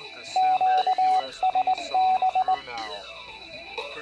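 Morse code beeps: a single steady tone keyed in a quick run of long and short pulses for about two seconds, over faint radio voice chatter and a thin steady high whine.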